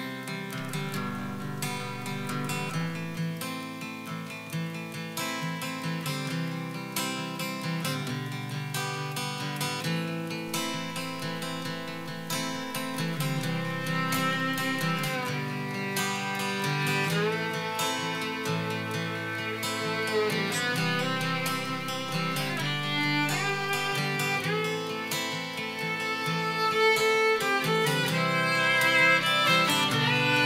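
Bluegrass string band playing the instrumental opening of a song: fiddle over strummed and picked guitar in a steady rhythm, growing louder over the last few seconds.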